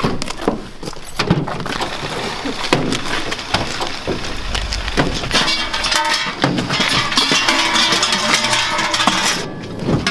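Krampus costume bells clanking and jangling, with scattered metallic knocks that build into a continuous dense ringing from about halfway through.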